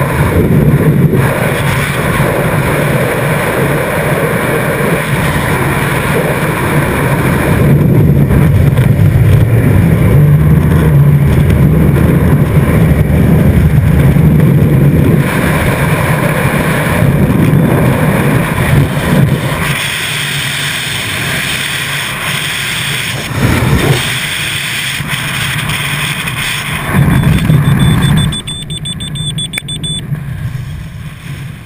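Loud, steady rush of freefall wind buffeting a helmet-mounted camera's microphone. Near the end the rush drops off as the parachute opens.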